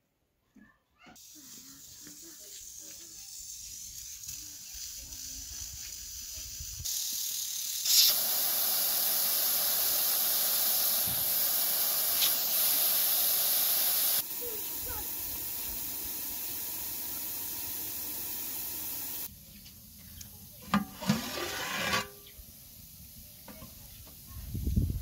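Water rushing from a standpipe tap opened with a screw-down valve handle: a steady loud hiss that builds and then drops in steps. A few knocks and clatters follow near the end.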